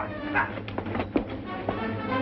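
Dramatic film score music over a scuffle: several sharp knocks and thuds of a fistfight, with a brief high cry about half a second in.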